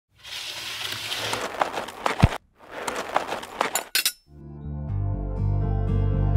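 Two short bursts of hissing clatter with sharp clinks, like a glassy or metal shatter, separated by a brief silence. Background music with plucked strings comes in about four seconds in.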